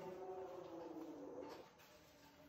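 A bird's low, drawn-out call that slides slightly down in pitch and stops about a second and a half in.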